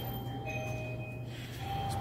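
Low steady hum of a store's glass-door refrigerated drink coolers running, with a few faint held tones coming and going over it.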